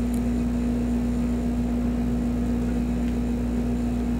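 Steady background hum with one constant tone, unchanging throughout.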